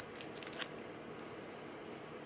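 Faint crinkling of a clear plastic sleeve as a sealed trading card is turned over in the hands: a few light crackles in the first half-second, over a steady low room hiss.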